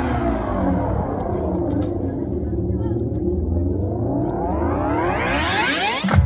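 A sustained, many-voiced chord from the marching band's show, gliding slowly down in pitch for about three seconds, then sweeping steeply upward toward the end, over a steady low bass.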